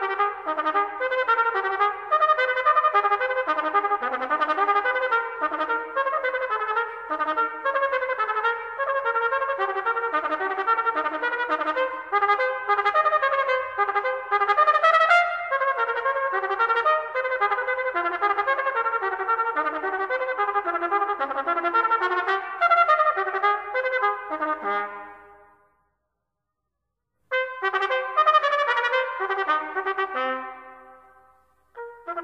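Solo B-flat trumpet playing a staccato étude in fast runs of short, detached, triple-tongued notes in triplets. About 25 seconds in a phrase ends and rings away, and after a brief pause the playing resumes.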